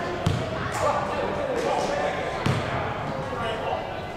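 A basketball bouncing on a hardwood court, two thumps about two seconds apart, echoing in a large sports hall, over background voices.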